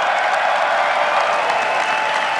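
A large audience cheering and shouting with clapping, held steadily loud; it is loud enough to push a watch noise meter to 96 decibels.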